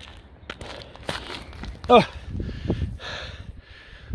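Footsteps on gritty concrete as a man walks, out of breath after a hundred weighted burpees. About two seconds in he lets out one falling "oh" groan, followed by heavy breaths.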